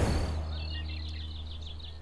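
Birds chirping in a quick run of short, high chirps that fade out, after a brief whoosh at the start, over a low fading hum.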